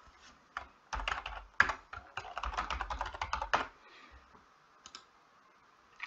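Typing on a computer keyboard: a quick run of keystrokes lasting about three seconds, then a pause with a couple of faint clicks near the end.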